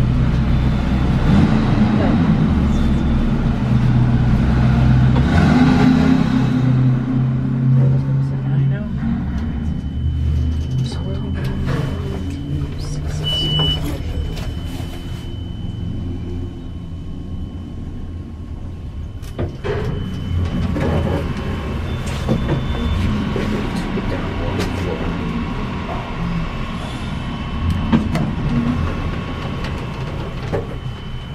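Schindler-modernized traction elevator car running, with a steady low hum that is loudest in the first ten seconds, a thin high tone through the middle and a short high beep about thirteen seconds in.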